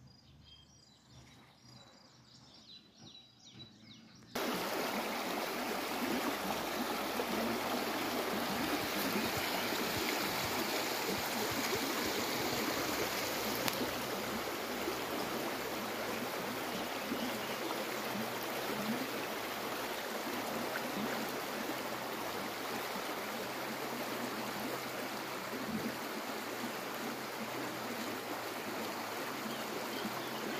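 Water rushing steadily, like a fast-running stream or ditch, cutting in abruptly about four seconds in. Before it, only faint bird chirps.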